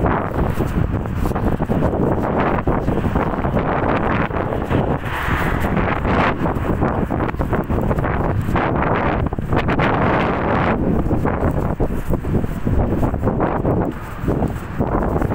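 Loud, gusting wind noise buffeting the microphone.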